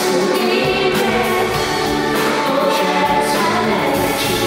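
Live band music with a woman singing lead into a handheld microphone. The bass drops out for stretches and comes back in just before the end.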